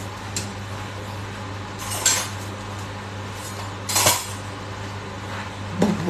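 Metal cutlery and cookware clattering in two short bursts, about two seconds in and again about four seconds in, over a steady low hum.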